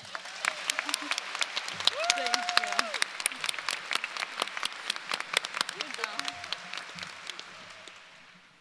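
Audience applauding, a dense run of claps, with a couple of voices calling out over it; the clapping thins out and fades near the end.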